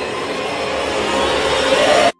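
A loud, steady rush of noise from an anime trailer's sound effects, swelling louder toward the end.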